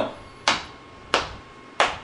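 Finger snaps keeping a steady beat, three sharp snaps about two-thirds of a second apart, counting out the quarter-note beats of a 4/4 measure.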